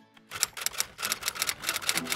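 Typewriter key-click sound effect: a fast, even run of sharp clicks, about eight a second, starting about a third of a second in, as the slogan text types itself onto the screen.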